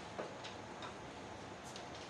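A few faint, short clicks and taps over steady room hiss, the first and loudest just after the start: papers and small items being handled on a floor mat.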